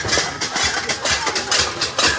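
A crowd beating pots and pans, a fast, irregular metallic clatter of several strikes a second.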